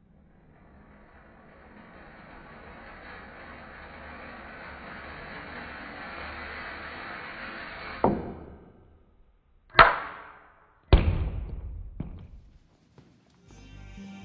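Ball rolling down the lab ramp and across the table, growing louder for about eight seconds, then striking the floor and bouncing three more times, each bounce closer together and fading. The audio is slowed down from slow-motion video.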